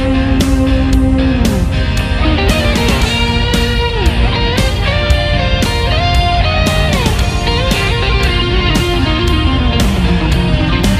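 Background music: an instrumental stretch of a rock song led by electric guitar, with sliding melody notes over a steady drum beat.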